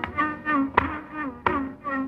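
Carnatic music in raga Kedaragowla: violin playing short phrases of gliding, ornamented notes, with several sharp mridangam strokes cutting in.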